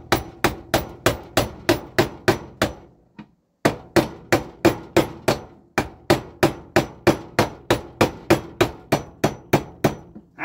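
A hammer tapping a steel roll pin through the hole in a magneto drive shaft and gear held in a bench vice, at about four blows a second, with a short pause about three seconds in. The split roll pin is being driven through in place of a taper pin.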